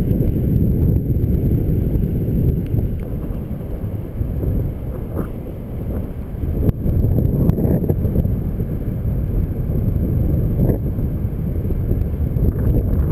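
Wind buffeting the microphone of a camera on a moving bicycle: a heavy, uneven low rumble that eases for a couple of seconds in the middle, mixed with tyre noise on a wet tarmac path.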